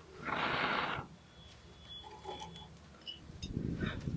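A person blowing on a smouldering steel-wool ember under fatwood sticks to coax it into flame: one breath of about a second near the start. A second blow builds near the end, with faint clicks of sticks being placed in between.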